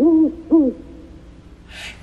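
Owl-like hooting: short hoots, each rising then falling in pitch, with the last about half a second in. A short hiss comes just before the end.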